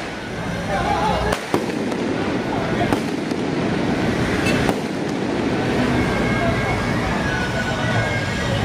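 Firecrackers going off in the street: a handful of loud, sharp bangs at irregular intervals over a steady crowd and street din.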